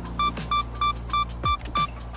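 Sony camera's two-second self-timer beeping, a run of about seven short, evenly spaced high beeps at roughly three a second, counting down to the shutter release for a test exposure.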